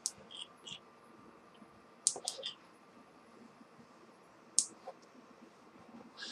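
Quiet, drawn-out inhale through an Aspire Nautilus vape tank with its airflow set wide open, with a few faint clicks about two seconds in and one sharp click a little past four and a half seconds.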